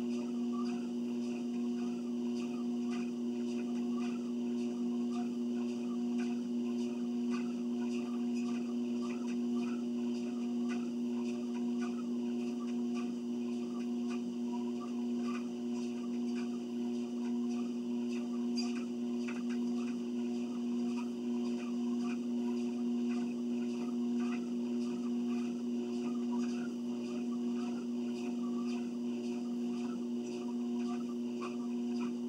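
Electric treadmill running at a steady speed: a constant low hum from its motor, with faint, irregular footfalls on the moving belt.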